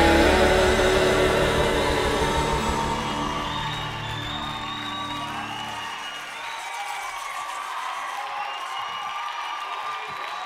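A live gospel band's closing chord, held on keyboards and bass, fading out over about six seconds, followed by an audience applauding and cheering.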